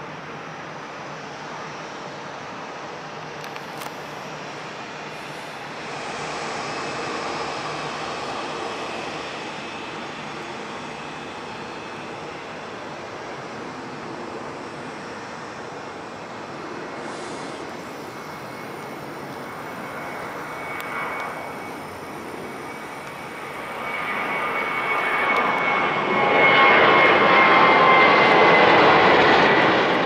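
Jet airliner engines: a steady rumble that grows much louder over the last few seconds, with a high whine that slowly drops in pitch.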